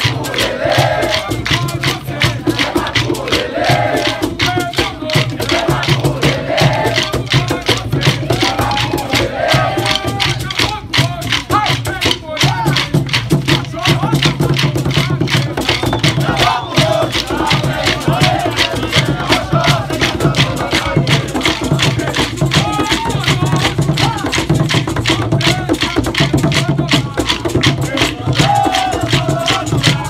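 Maculelê music: atabaque drums beating steadily under rapid, continuous clacking of wooden sticks, with a group singing.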